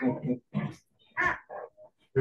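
A person laughing in short broken bursts, heard over a video-call connection.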